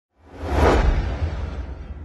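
A whoosh sound effect with a deep rumble underneath. It swells quickly about a quarter second in, peaks around half a second, then fades out over the next two seconds.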